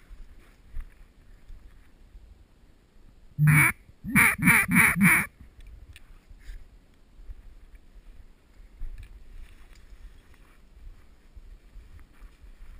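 Five loud mallard-style quacks, one and then a quick run of four, about a third of the way in.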